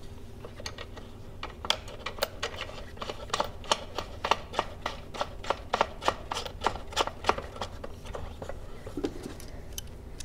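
Light clicks and ticks, about three a second, from small nuts being threaded by hand onto the J-bolts that hold down a plastic battery-box cover, over a faint steady hum.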